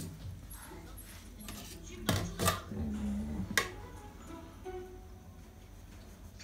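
A few light knocks and clinks of a wooden spatula against a frying pan and a plate as an omelette is served, clustered about two to three and a half seconds in.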